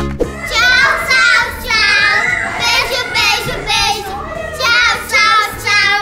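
High-pitched children's voices in repeated loud bursts, singing and shouting over background music.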